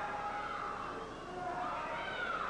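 Steady murmur of a small arena crowd during a wrestling match, with a few drawn-out voices calling out above it.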